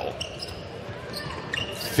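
Basketball being dribbled on a hardwood court over a steady low arena hum and crowd murmur.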